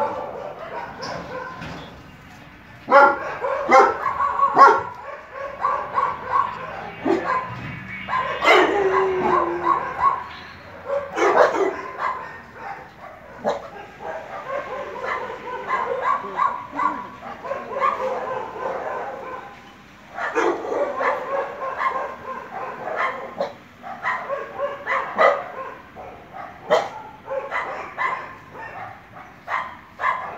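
A dog barking over and over, in runs with brief pauses.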